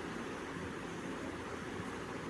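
Steady low background noise: room tone with microphone hiss and a faint low hum. No distinct event stands out.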